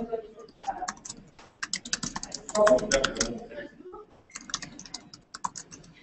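Typing on a laptop keyboard: irregular runs of quick key clicks, with a voice briefly in the background about halfway through.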